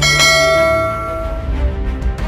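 A bell-like chime struck once, ringing and fading away over about a second and a half, over end-screen outro music with a steady low bass.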